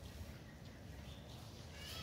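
A faint, short, high animal call near the end, over a low background hum.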